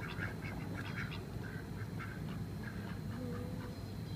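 Several white domestic ducks quacking softly, a quick run of short quacks that goes on without a break.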